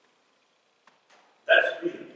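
A pause, then a man's short, abrupt vocal sound about one and a half seconds in.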